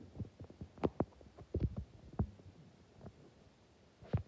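Irregular soft thumps and taps, a few a second, with the loudest around a second in and again about halfway through.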